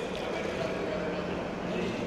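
Indoor swimming pool ambience in a large tiled hall: a steady wash of water noise from swimmers treading water, with faint voices mixed in.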